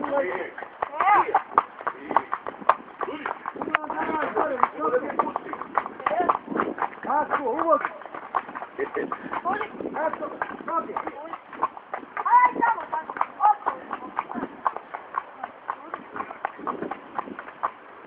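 Horses' hooves clip-clopping on a paved path as they walk, a quick run of sharp hoof strikes, with people's voices talking over them.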